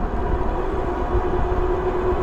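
ENGWE L20 fat-tyre e-bike riding at full pedal assist, around 22 miles an hour: the motor gives a steady whine over a dense rush of wind on the microphone and tyre noise.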